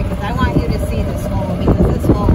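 Golf cart riding along a gravel cart path: a loud, steady low rumble of the ride with wind buffeting the microphone.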